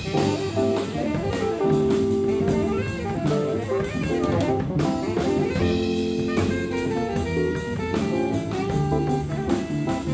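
Live jazz quartet of saxophone, keyboard, upright bass and drum kit playing a tune, with held melody notes over a steady beat. The drummer keeps time with sticks on the cymbals and snare.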